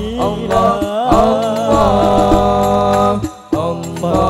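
Male singing of Arabic sholawat in the Al Banjari style: a long, ornamented phrase with held notes that breaks off about three and a quarter seconds in, before the next phrase starts.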